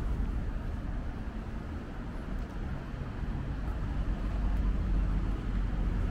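Steady low rumble of distant city traffic, swelling slightly near the end.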